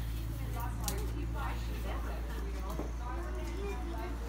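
Indistinct voices talking in the background over a steady low hum.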